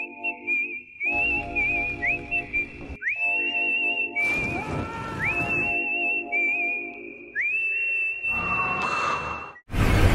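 Music: a whistled melody of long high notes, each entered with an upward slide and wavering as it is held, over a repeating low backing pattern. A loud rushing noise cuts in just before the end.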